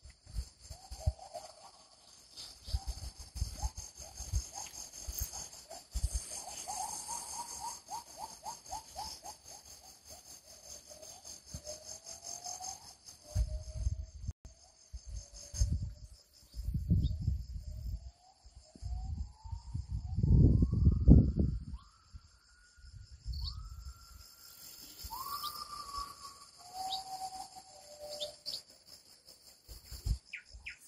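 Outdoor ambience: a steady high insect drone under a string of whistled notes that waver, rise and slide, with irregular low rumbles on the microphone, loudest about two-thirds of the way through.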